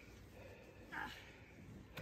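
Near silence: faint outdoor ambience, with one short faint vocal exclamation from a person about a second in.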